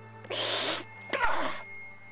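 A man's sharp breathy hiss, then a second shorter breathy sound with some voice in it, each about half a second long: a reaction to pain as a needle pricks the skin.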